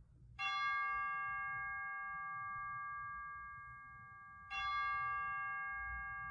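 A bell struck twice, about four seconds apart. Each stroke rings on with a clear metallic tone and fades slowly.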